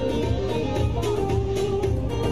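Live Kurdish folk dance music from a band playing keyboard and saz, with a steady repeating beat under a gliding melody.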